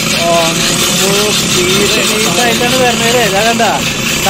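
A person's voice talking over a steady background hiss.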